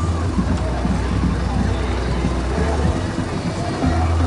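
Slow-moving parade cars running with a steady low rumble, mixed with people talking.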